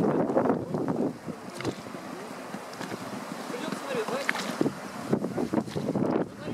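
Wind buffeting the microphone, with indistinct talk coming and going.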